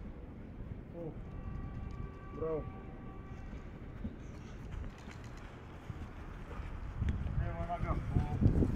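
A few brief shouted calls over a low outdoor rumble during a football warm-up drill, growing louder near the end.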